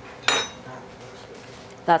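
A spoon clinks once against a bowl, with a brief high ring.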